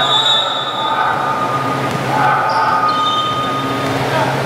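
Basketball shoes squeaking on the indoor court floor as players cut and stop: high squeals, a longer one at the start and a few short ones in the second half, over the steady din of the gym.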